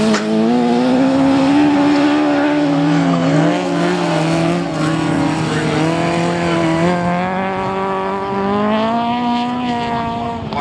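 Several autograss race cars' engines running hard together, their pitches rising and falling as the drivers rev through the bends of the dirt track.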